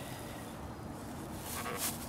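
Faint, steady outdoor background noise with a low rumble, and one brief soft rustle near the end.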